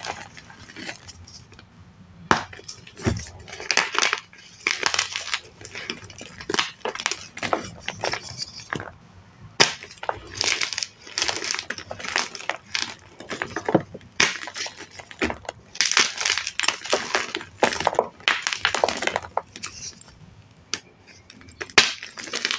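Dyed, reformed gym chalk blocks being crushed and crumbled by hand: a continual run of irregular dry crunches and snaps, with crumbling grit in between.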